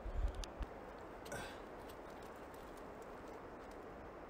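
Quiet outdoor background with a short low rumble at the start and a few light clicks in the first second and a half, then a steady faint hiss.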